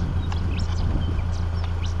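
Many small hooves of a mob of ewes clicking irregularly on the bitumen as the sheep walk along the road, over the steady low hum of a vehicle engine creeping along behind them.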